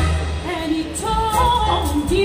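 Live symphony orchestra accompanying a singer whose voice comes in about half a second in, holding wavering notes with vibrato, amplified over a stage PA.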